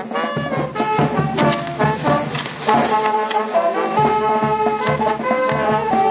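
Brass band music, with trombones and trumpets playing a lively melody over a steady drum beat.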